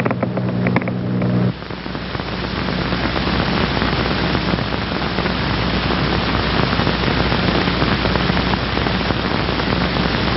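Static electricity crackling as a comb is drawn through hair: a few separate sharp snaps at first, then, from about a second and a half in, a dense steady crackling hiss of tiny sparks.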